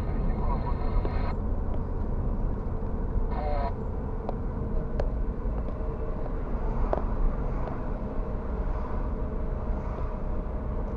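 Steady road and engine rumble of a car driving, heard from inside the cabin, with a few light knocks. Two short bursts of a pitched, voice-like sound come near the start and again about three seconds in.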